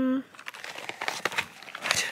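Packaging of a box of chocolates being handled and opened: irregular crinkling and rustling with small crackles, just after a held vocal note ends at the very start.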